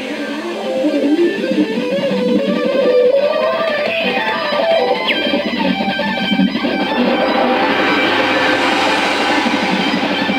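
Free-improvised space-rock jam led by electric guitar, playing a wandering melodic line over a dense band texture; a low sustained note joins about halfway through.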